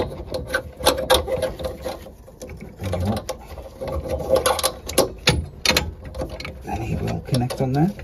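Irregular clicks and knocks of metal parts being handled as the brass gas-pipe nut under a boiler gas valve is screwed up by hand.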